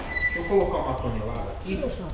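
Men talking and calling out to each other, one voice saying "aqui" near the end.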